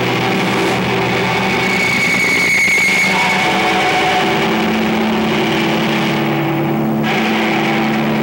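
Loud, distorted electric guitars from a live rock band, holding droning chords in a dense wash of noise. A wavering high tone rises out of it about two seconds in.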